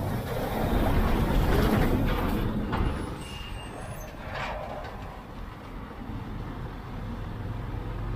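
A diesel private bus passing close alongside a slow-moving motorcycle, its engine rumble and road noise loudest during the first couple of seconds, then easing off to a lower steady vehicle and road rumble as it pulls ahead.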